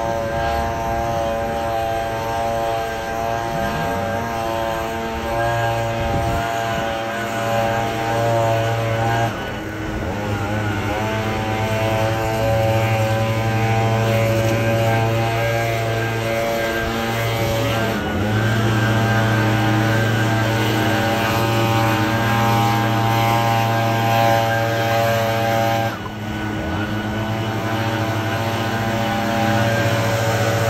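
Handheld leaf blower running at speed, a steady pitched fan whine as it blows leaves off a concrete sidewalk. Its speed drops briefly about a third of the way in and again near the end, then comes back up.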